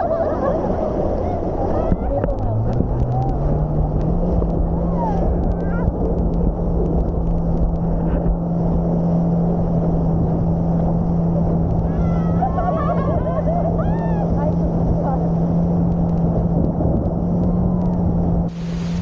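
A towing motorboat's engine droning, rising in pitch about two seconds in as it speeds up and then holding steady, under rushing water and wind on the microphone. Riders' voices and squeals break through now and then.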